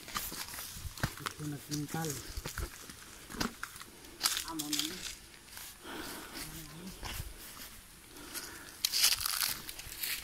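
Footsteps through dry leaf litter and undergrowth, with irregular crunching and crackling of plants underfoot. Short bits of quiet talk come in now and then.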